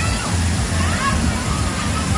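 Water pouring and splashing steadily from a water-park play structure's overhead bucket and sprays into the pool, with short calls from voices over it.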